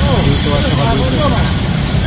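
Factory metal-strip processing machine with its electric motors running: a steady, loud low hum.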